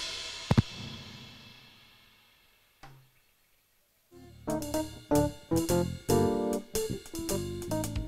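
Live band of drum kit, keyboard and electric guitars: the music rings away after a sharp hit half a second in, fading to near silence. About four seconds in, the band starts up again with loud accented hits on the beat.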